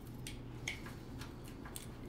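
A few faint, light clicks from hand tools and wire being handled, with a steady low hum of the room behind.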